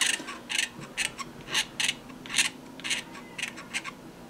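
Hobby knife blade scraping a clear plastic model canopy in a run of short strokes, about three a second, shaving down a moulded ridge.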